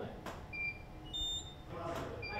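Short high electronic beeps from photo-shoot equipment, two beeps at different pitches about half a second apart, with a sharp click shortly after the start and another near the end.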